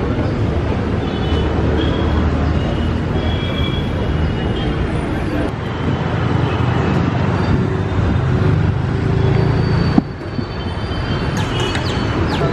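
Busy city street traffic: vehicle engines running and passing, with people's voices in the background. A sharp click about ten seconds in, where the sound briefly drops.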